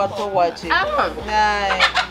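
A rooster crowing once, its long held call in the second half.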